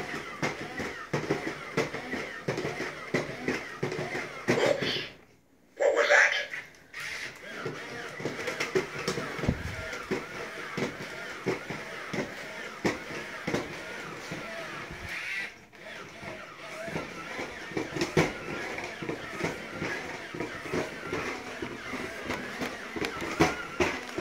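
Silver Robosapien V2 toy robot walking in roaming mode: gear motors whirring and plastic feet clicking on a hard vinyl floor, with voice-like electronic sounds mixed in. It falls silent for a moment about five seconds in and again briefly later.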